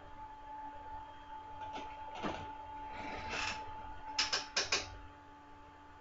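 Computer mouse clicking, four quick clicks about four seconds in, over a faint steady electrical hum.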